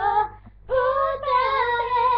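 Young girls singing together, unaccompanied: a phrase breaks off shortly in, and after a brief pause they come back in on a long held note.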